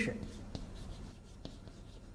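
Chalk writing on a blackboard: faint scratching with a few light ticks as the chalk meets the board.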